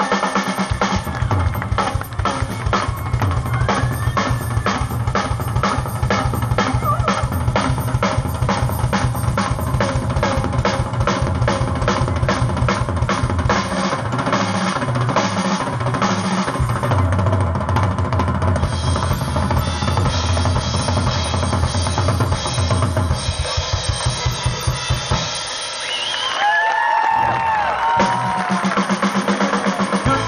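Live drum kit played at a fast, steady beat of bass drum, snare and cymbals, most likely a drum solo. Near the end the low end drops away for a couple of seconds before the beat resumes.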